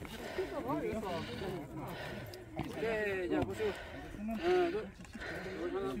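People's voices talking, the words indistinct.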